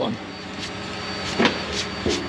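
A steady machine hum with a few light knocks about two-thirds of the way in and near the end.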